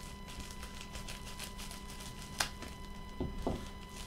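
Faint rustling and small ticks of a plastic poly mailer being handled and opened, with one sharp click about halfway through and a few brief handling sounds near the end, over a steady electrical hum.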